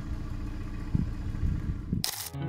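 A car engine idling with a steady low rumble, with a soft knock about a second in and another near the end.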